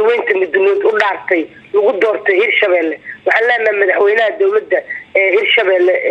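Speech only: a woman talking steadily in Somali, the voice thin and phone-like.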